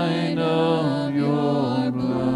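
Worship band performing a song: several voices singing long held notes together over strummed acoustic guitars.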